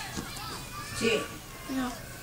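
Short snatches of conversational speech from people around a table, a child's voice among them, about a second in and again near the end.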